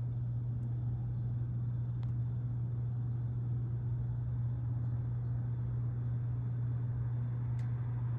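A steady low hum, unchanging throughout, with a faint high whine above it and a couple of faint clicks.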